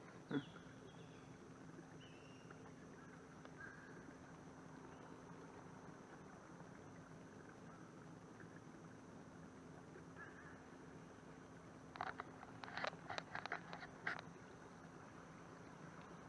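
A bird's short burst of harsh, rapid calls, about eight sharp notes over two seconds near the end, over a faint steady background.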